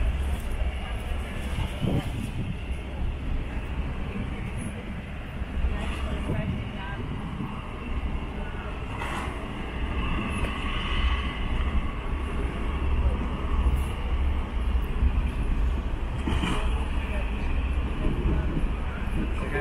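Wind buffeting the microphone in a steady, gusty low rumble, with indistinct voices in the background, most noticeable about ten seconds in.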